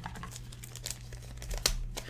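Light plastic crinkling with scattered small clicks as trading cards in plastic sleeves are handled.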